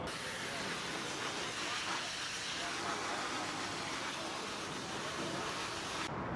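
High-pressure water spray from a hand-held pressure-washer lance, a steady hiss as the jet hits wet asphalt.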